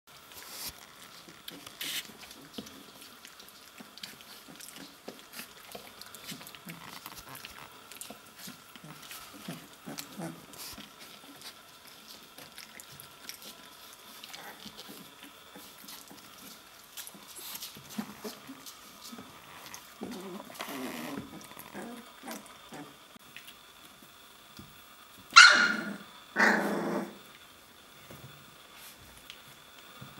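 Three-week-old Wäller puppies play-fighting, giving small growls. Near the end come two loud barks about a second apart.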